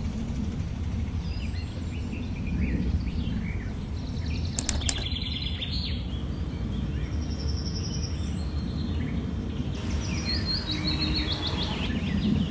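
Outdoor garden ambience: scattered bird chirps over a steady low rumble. A brief sharp click comes about five seconds in, and near the end a bird gives a quick run of falling high notes.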